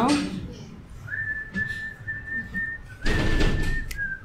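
A person whistling a few notes of a tune, mostly one long steady held note with a small dip near the end. A loud rush of noise comes about three seconds in.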